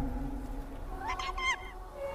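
A small creature's short, high squeaky mewing call about a second in, with stepped pitch, as the music dies away.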